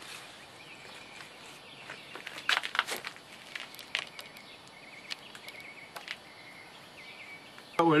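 Quiet outdoor background with a few light clicks and knocks from handling parts in the engine bay, most of them between two and a half and four seconds in.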